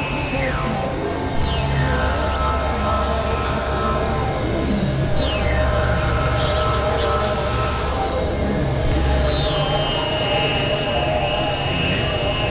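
Experimental electronic drone music: a sustained low synth drone under steady held tones and a dense noisy texture, with a falling pitch sweep about every four seconds. The low drone drops out about nine and a half seconds in.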